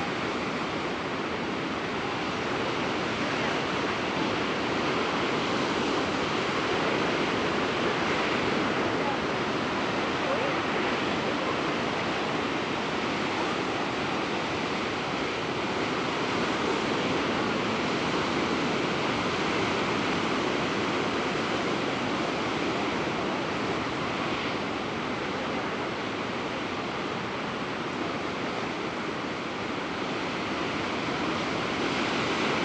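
Ocean surf breaking along a rocky shore: a continuous rushing noise that swells and eases slightly.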